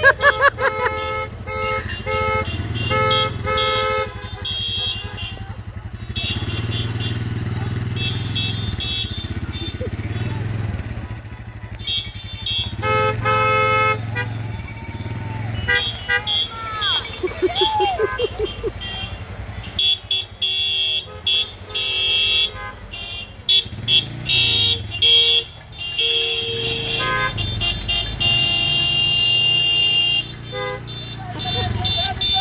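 Car horns honking again and again from a slow line of passing cars, in bouts of steady tones, over the low run of idling and rolling engines, with voices calling out.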